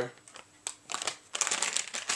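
Crinkling and rustling of a plastic soft-bait package being handled, a dense run of crackles starting a little under a second in.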